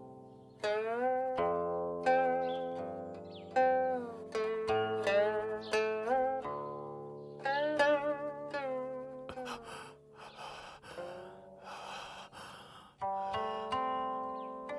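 Guqin (seven-string Chinese zither) played slowly: single plucked notes ring and fade, many of them sliding up or down in pitch as the left hand glides along the string.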